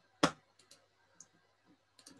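Clicks from a computer pointing device used to annotate a slide: one sharp click about a quarter second in, then a few fainter, quicker clicks.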